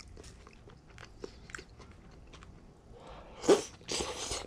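A person chewing a mouthful of fried rice with lettuce, with faint, irregular wet clicks of chewing. Near the end there is a louder noisy burst with a brief murmur.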